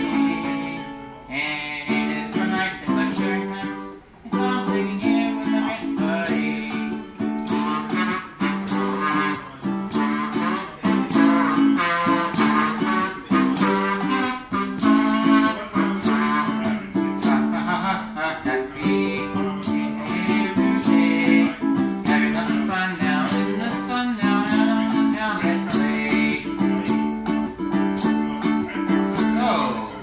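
A man singing live into a microphone while strumming a small acoustic guitar in a steady rhythm.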